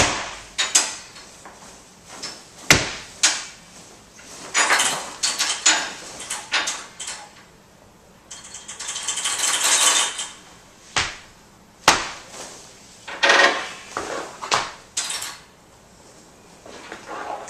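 Sparse free-improvised acoustic music made of scattered clicks, rattles, scrapes and a few sharp knocks, with a hissing swell between about eight and ten seconds in.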